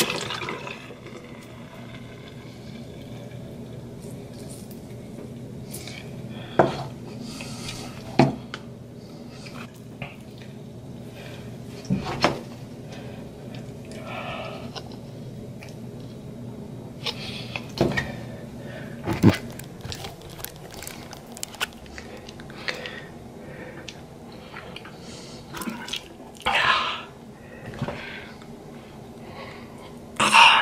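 Scattered small clicks and knocks of a plastic toothbrush and toothpaste tube being handled at a bathroom sink, with a few short rustling scrapes, over a steady low hum.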